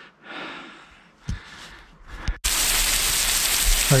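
Steady rush of a waterfall splashing onto rocks, starting abruptly a little past halfway. Before it there is only faint background noise with a couple of light knocks.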